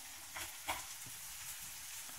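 Beef roast browning in a hot skillet: a steady sizzle, with two short crackles in the first second.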